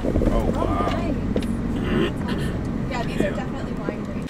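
Steady engine and road rumble of a vehicle driving, heard from inside the cabin, with indistinct voices over it.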